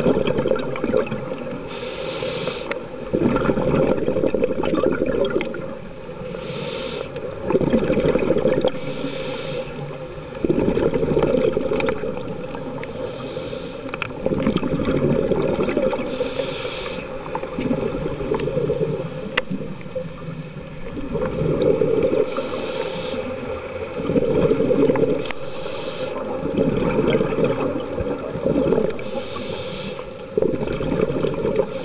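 Scuba diver breathing through a regulator, heard underwater: a short hiss on each inhale, then a louder burble of exhaled bubbles, about eight breaths over half a minute.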